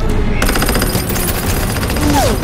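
Rapid automatic gunfire from a film action scene: a fast, even run of shots lasting about a second, starting about half a second in.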